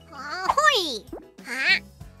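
A cartoon character's short, pitch-gliding vocal exclamations ("Hoy") over light children's background music.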